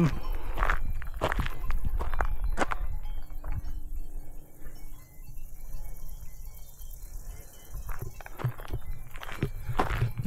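Cowbells on grazing cattle jingling faintly from the pasture below, under a steady low rumble of wind on the microphone. Footsteps and knocks in the first few seconds and again near the end.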